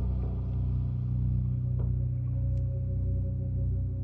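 Low, sustained drone of horror film score music, with a higher held note coming in about halfway through.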